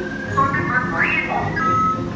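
Sci-fi electronic beeps and whistle-like tones from the attraction's show audio, with a quick rising chirp about a second in and a held tone near the end, over background music.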